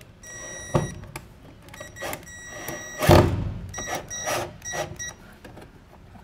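Cordless drill driving screws into wood, its motor whining in several short runs that start and stop, with a few clicks and one loud thump about three seconds in.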